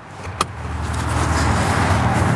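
A single click, then a motor vehicle's rumble and hiss that builds over about a second and holds steady.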